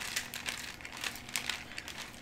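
Parchment paper crinkling and crackling under a wooden rolling pin as dough is rolled out between two sheets, a dense run of small irregular crackles.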